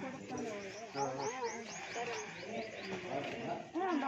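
Voices with wavering pitch, and a bird calling a quick run of about nine short falling chirps, about six a second, starting about a second in.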